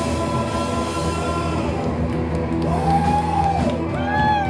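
A live rock band playing: electric guitar, bass and drums, with the guitar bending a long note up and back down in the second half.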